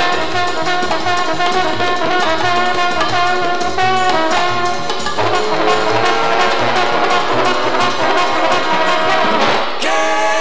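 Jazz trombone ensemble playing an instrumental passage in close harmony, over a steady bass beat of about two notes a second.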